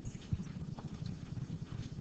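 Quiet classroom room sound with faint, irregular low knocks and a couple of light clicks, and no speech.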